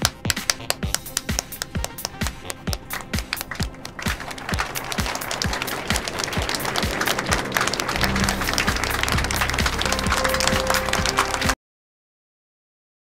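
A crowd clapping, first in a steady beat, then thickening about four seconds in into loud applause from many hands, over background music. It all cuts off abruptly just before the end.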